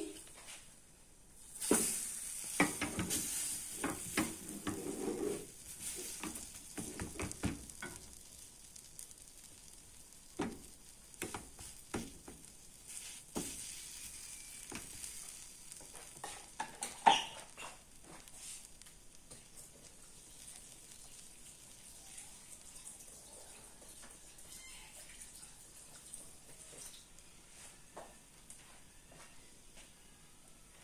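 Sweet potato batter sizzling in butter in a frying pan, with a utensil scraping and tapping against the pan. The sizzle and scraping are loudest for the first several seconds, then grow fainter, with one sharp knock about 17 seconds in.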